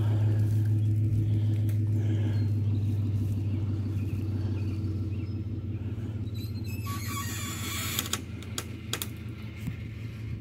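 Pickup truck's V6 engine running at a steady low pitch while it pulls on a tow strap to drag a car out of the brush. About seven seconds in, crackling and sharp snapping join it.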